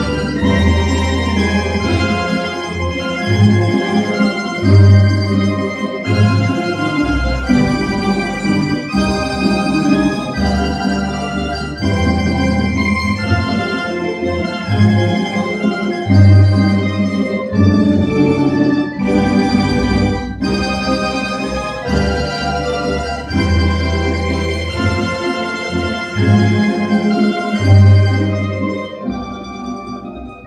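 Tamburica ensemble of bisernicas, bračes, bugarija, čelo and berde playing a slow melody, the tamburicas holding tremolo-picked notes over deep plucked bass notes from the berde. The music softens near the end.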